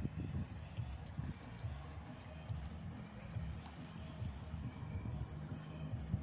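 Wind buffeting the microphone: an irregular low rumble of dull thumps.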